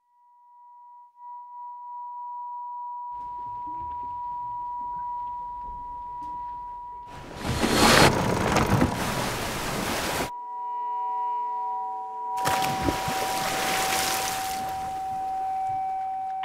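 A single held electronic tone from the score runs throughout and shifts to a lower pitch about two-thirds of the way through. Under it come two loud stretches of rushing wind and sea around a sailing yacht under way. The first cuts off abruptly about ten seconds in and the second starts again two seconds later.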